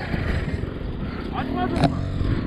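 Steady low rumble of an off-road motorcycle running and wind on the helmet camera's microphone. A man calls out briefly near the end.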